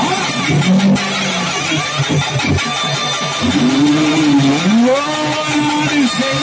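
Live devotional folk music from a stage band: a melody of long, sliding held notes over fast, continuous drumming.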